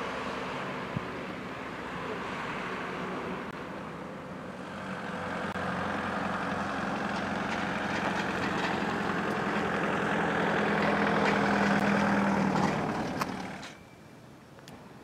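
A heavy vehicle engine running steadily at a construction site. It grows louder from about a third of the way in, then cuts off abruptly near the end.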